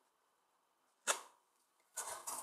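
A single sharp tap about a second in, over otherwise near-silent room tone.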